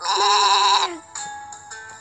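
Cartoon sheep's bleat sound effect: one wavering bleat lasting about a second, followed by soft background music.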